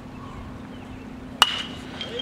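A metal baseball bat hitting a pitched ball about one and a half seconds in: one sharp ping that rings on briefly.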